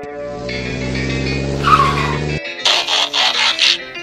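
Car sound effect: an engine running steadily and building for about two seconds, a short falling tyre squeal, then about a second of hissing tyre skid.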